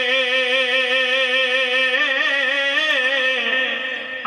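A man's voice holding one long sung note in tarannum, the melodic chant in which Urdu poetry is recited. The note wavers slightly in pitch and fades out near the end.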